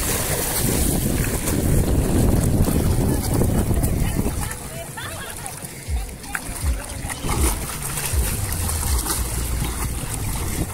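Shallow sea water splashing and sloshing around legs wading through it, with wind rumbling on the microphone.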